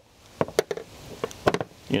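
A few short, light knocks and clicks from hand-handling of a tool, over a faint background.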